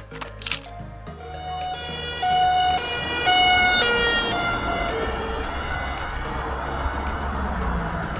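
An emergency vehicle's siren, its pitch switching back and forth between a higher and a lower note for a few seconds, over the steady noise of road traffic. A short burst of clicks comes first, in the first second.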